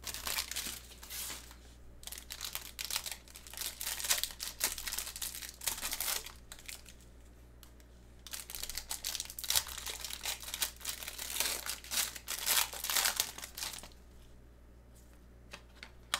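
Plastic wrapper of a trading-card pack crinkling and tearing as it is handled and ripped open, in irregular bursts with a short lull about halfway through and quieting near the end.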